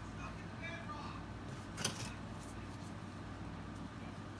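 Steady low room hum, with a single sharp click about two seconds in as plastic mixing cups are handled.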